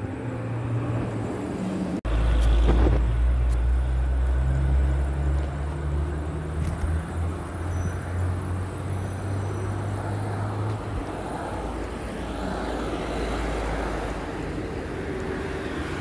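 A motor vehicle engine running close by: a low, steady hum that starts suddenly about two seconds in, drops a little in pitch about seven seconds in and fades out around eleven seconds. Street traffic noise runs underneath.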